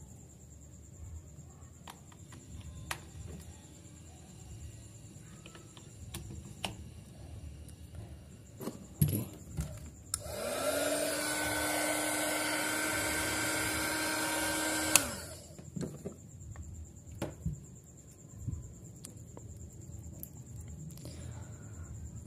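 Small 300 W electric hot air gun switched on: its fan motor spins up to a steady whine with a rush of air for about five seconds, then cuts off and winds down. Sharp clicks and light handling knocks around it.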